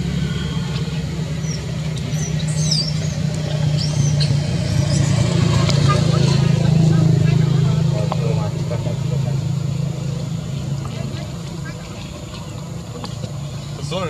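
A low, steady engine hum that grows louder toward the middle and then fades away, with voices in the background and a few brief high chirps early on.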